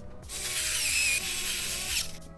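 Hand screwdriver turning a screw into a PC power supply's mounting: a steady raspy hiss that starts shortly in, with a thin wavering squeak in the first half, over faint background music.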